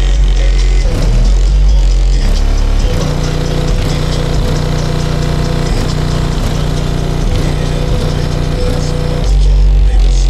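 Loud electronic music with a heavy bass line; its bass pattern changes about three seconds in and changes back near the end.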